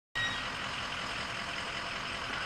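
Steady outdoor background noise, an even hiss with no distinct event in it.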